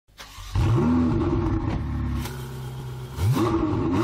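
An engine revving up twice, first about half a second in and again near the end, running steadily in between.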